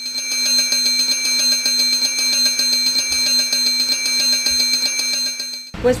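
Electric railway signal bell ringing continuously with rapid, even strokes, warning that a train is approaching. It cuts off suddenly near the end.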